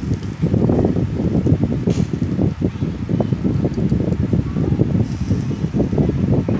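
Wind buffeting the microphone: a loud, gusty low rumble that comes and goes in rapid flutters.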